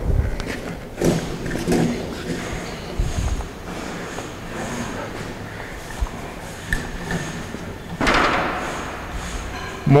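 Wires being pulled through conduit with a fish tape: a few knocks and thuds, then the cable rustling and scraping as it drags through, with a longer scraping rush about eight seconds in.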